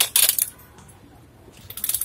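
Handling noise on the phone's microphone: two short scratchy rustling bursts, one at the start and one near the end, as the phone and its earphone cable move against clothing.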